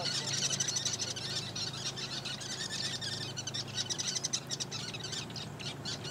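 A colony of sociable weavers chattering at their communal nest: a dense stream of short, high chirps from many birds at once.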